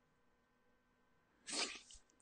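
Near silence, then, about a second and a half in, one short, sharp intake of breath through a close microphone just before speaking.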